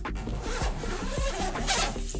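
The main zipper of a Manfrotto LW-88W roller case being pulled open in one long continuous zip, with background music underneath.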